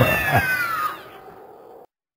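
A single high cry that slides steadily down in pitch, fading out about a second in over a low background hum; the sound cuts to silence just before the end.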